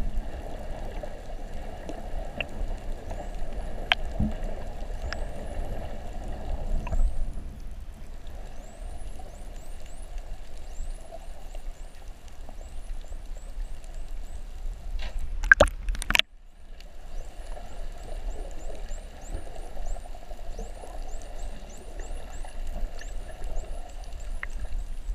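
Dolphins whistling underwater: many short rising whistles, one after another, over water noise and a few steady humming tones. A couple of sharp knocks come about sixteen seconds in.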